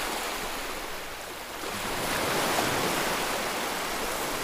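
Ocean surf: small waves washing onto a beach, a steady rush that swells a little louder about two seconds in.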